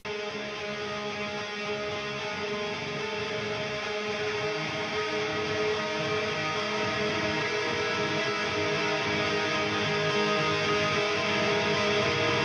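Outro music: a sustained, ringing electric guitar chord that swells slowly louder.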